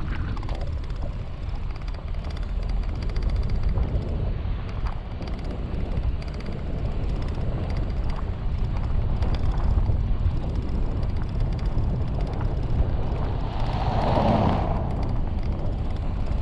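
Steady low rumble of a vehicle travelling on a gravel road, mostly wind on the microphone and tyre noise. An oncoming vehicle swells past close by about fourteen seconds in.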